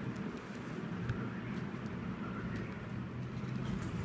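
Steady low background hum, with a few faint clicks from a plastic connector and cable being handled.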